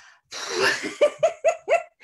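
A woman laughing: a breathy rush of air, then four short "ha" bursts about a quarter of a second apart.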